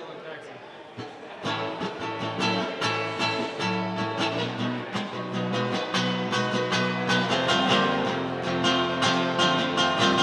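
Acoustic guitar strummed in a quick, steady rhythm of chords. It comes in about a second and a half in after a quieter start and grows louder.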